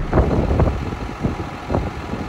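Strong wind buffeting the microphone in a snowstorm, coming in uneven rumbling gusts, strongest just after the start.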